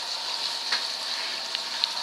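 Euroreef RC500 recirculating protein skimmer running: a steady fizzing hiss of salt water full of fine bubbles, with a few faint ticks.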